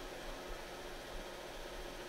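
Faint steady hiss of background noise, with no distinct event.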